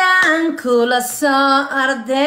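A woman singing alone, a run of short held notes stepping up and down.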